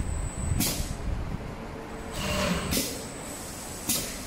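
Automatic hot-knife webbing cutting machine running through its feed-and-cut cycle, with a steady low running noise and a thin high whine. A short hissing stroke from the cutting head comes every couple of seconds, and there is a sharp click near the end.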